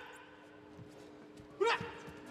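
Quiet broadcast room tone with a faint steady hum, then a short shouted vocal exclamation from a man near the end.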